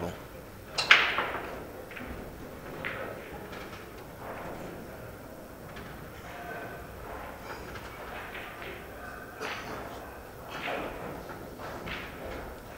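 A single sharp thump about a second in, with a short echo in a large hall, followed by quiet room sound and faint distant voices.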